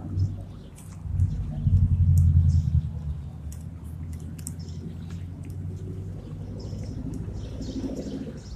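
Outdoor street ambience: a low rumble, loudest from about one to three seconds in, with faint bird chirps above it.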